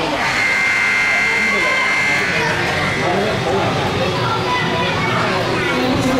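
Ice rink's electric horn sounding a steady buzz for about two seconds near the start, with the game clock run down to zero: the end-of-period signal. Spectators' voices chatter throughout.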